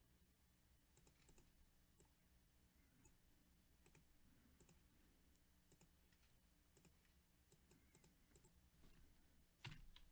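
Near silence with faint, scattered clicks of typing on a computer keyboard, in small runs every second or so, and one louder knock near the end.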